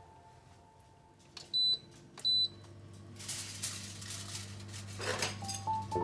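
Two short high beeps from a glass-top electric cooktop's controls as it is switched on, followed by a steady low hum from the hob. A hissing noise rises and fades over about two seconds after that.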